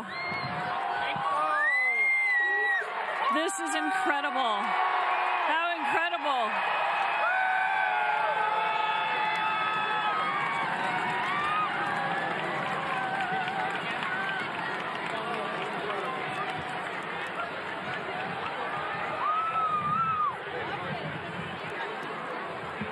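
Large crowd cheering and whooping, with many voices shouting and talking at once. This is a reaction to the end of totality as sunlight returns. The shouts are busiest in the first several seconds, then settle into steady crowd chatter, with one more whoop near the end.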